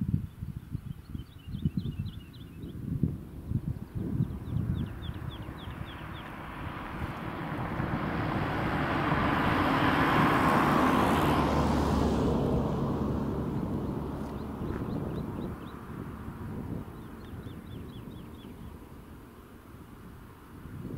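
A road vehicle passes by, growing louder to a peak about ten seconds in, then fading away over several seconds. Wind gusts buffet the microphone during the first few seconds.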